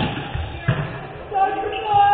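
A volleyball struck hard in a sports hall, with a second sharp ball impact under a second later. Players' shouts rise near the end.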